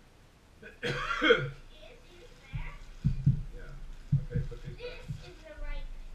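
A loud cough-like vocal burst about a second in, followed by a few dull knocks and brief indistinct vocal sounds.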